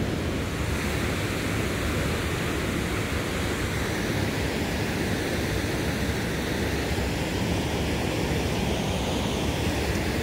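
Steady rushing of a fast-flowing river, with wind rumbling on the microphone.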